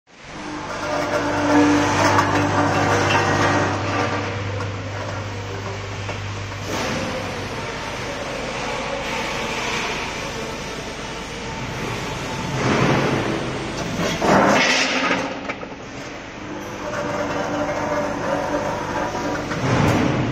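Automatic multihead weighing machine running with garlic cloves: a steady low hum for the first six seconds or so, then a few louder surges as the weigh hoppers release the cloves down the discharge funnel.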